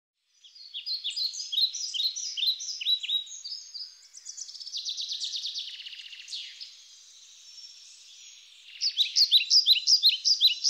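Small birds chirping: runs of quick, high, falling chirps several times a second, a fast trill in the middle, then another run of chirps near the end.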